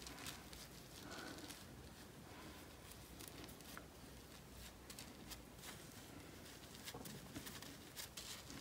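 Faint handling sounds of fingers and palms pressing and smoothing wet wool fibre down over bubble wrap, with a few light ticks.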